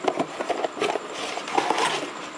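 Plastic packing bag and torn cardboard box being handled and rummaged through: irregular crinkling and rustling with small knocks.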